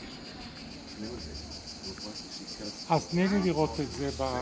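A steady, high-pitched insect chorus pulsing quickly and evenly. People's voices come in about three seconds in.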